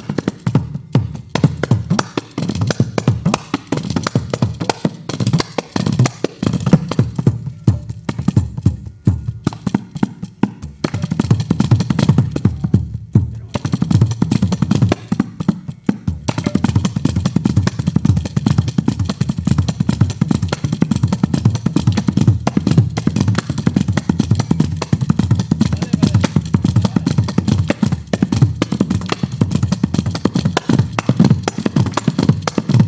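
Carnatic percussion ensemble playing fast, unbroken rhythms on mridangam, ghatam, tabla and ganjira. In the second half a ganjira, a small frame drum with jingles, is struck rapidly.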